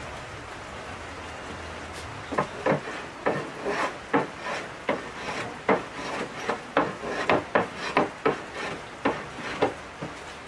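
Hand plane shaving a wooden board in quick, short strokes, about three a second, starting a couple of seconds in.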